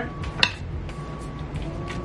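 Background music with a single sharp clink about half a second in: a spoon striking the ceramic slow-cooker crock while peppers and chicken are stirred.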